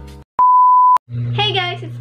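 A single electronic beep: one steady, pure tone lasting about half a second, starting and stopping abruptly. Just before it the music fades out, and a young woman starts speaking right after it.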